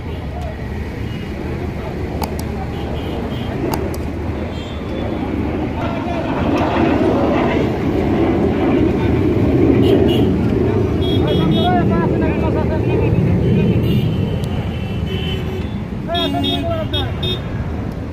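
Roadside traffic noise with vehicle engines running close by and people's voices talking over it.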